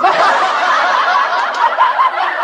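A crowd of many people laughing together, holding a steady level with no pauses.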